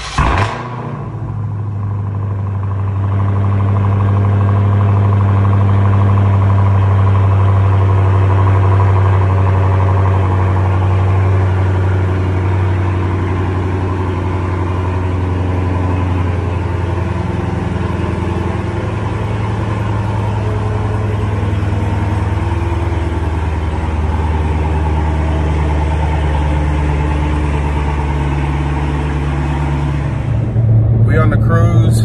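Dodge Challenger V8 cold start: the engine catches with a quick flare right at the start, then runs at a loud, steady cold idle.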